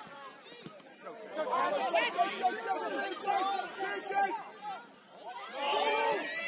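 Several voices shouting and calling over one another, players and touchline spectators at a youth football match, with no words clear; loudest in the middle and again near the end.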